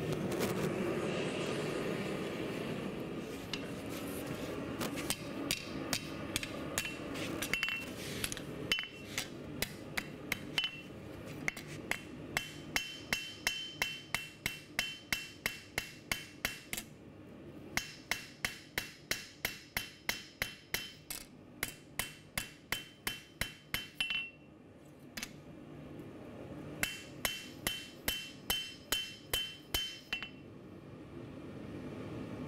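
Hand hammer striking a red-hot knife blade on a steel anvil to flatten it: a fast run of ringing blows, about two to three a second, with two short pauses. In the first few seconds, before the blows begin, the gas forge's burner is heard as a steady rush.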